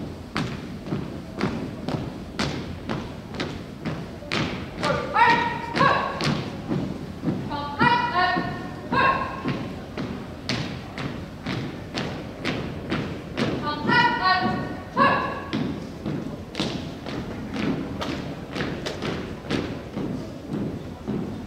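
Drill team marching in step on a hardwood gym floor: boot strikes landing together about twice a second, with a few short shouted drill commands.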